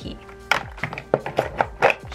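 Background music with a string of light, irregular knocks as a plastic storage tub and makeup compacts are put down and handled in a drawer.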